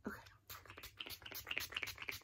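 A facial mist spray bottle being pumped in a rapid series of short hissing spritzes onto the face to set the makeup.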